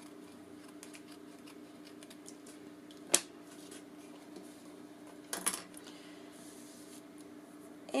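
Small craft scissors trimming paper, with one sharp click from the scissors a little after three seconds in, and then paper being handled and laid down on the work surface about two seconds later. A faint steady hum runs underneath.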